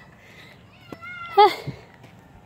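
A short, high-pitched vocal call about one and a half seconds in, rising and then falling in pitch, with a single click or tap just before it.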